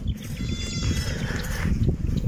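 A livestock animal's call, one high, arching call lasting about a second near the start, over a steady low rumble.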